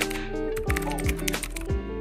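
Background music: a beat with deep bass notes that slide down in pitch, quick crisp ticking percussion and sustained chords.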